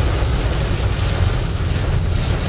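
Torrential rain pounding on a car's windshield and roof, heard from inside the cabin while the car drives slowly on a flooded road. It is a loud, steady rush over a deep rumble of tyre and road noise.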